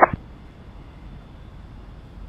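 Air traffic control radio channel open between transmissions: a steady low hiss of static with a faint high steady tone, after the last syllable of a pilot's readback in the first moment.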